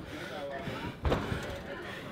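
A single sharp thump about halfway through, over faint voices.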